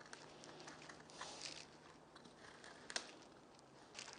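Faint scratching of a knife scoring around an oval through thin wood veneer on a cutting mat, with one sharper click about three seconds in.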